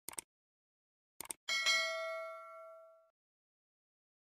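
A few short clicks, then about a second and a half in a bright bell-like ding that rings and fades out over about a second and a half: a logo-intro sound effect.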